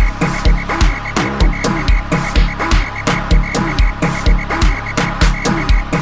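Gqom dance music playing in a DJ mix: heavy, repeating kick-drum hits with short downward-swooping bass drops, over a steady pattern of crisp hi-hat ticks.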